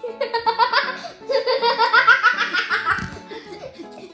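Children laughing hard: a long run of repeated, pulsing laughter that dies down about three seconds in.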